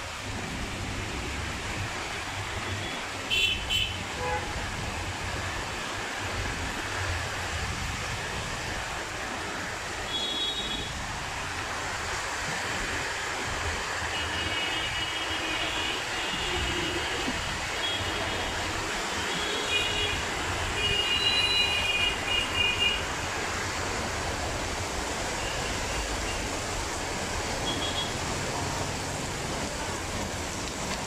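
Heavy rain falling steadily on a shack's tarpaulin and plastic sheeting, a constant even hiss. Short high-pitched tones cut through it a few times, loudest about three seconds in and between about 14 and 23 seconds.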